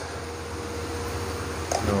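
Steady low hum and hiss of lit gas stove burners, with a faint steady tone under it.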